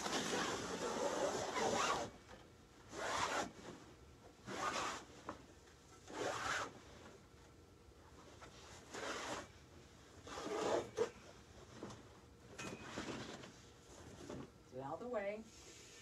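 Canvas leader being pulled off a glued, taped longarm frame roller in rasping tugs: one long pull first, then about six shorter ones every second or two.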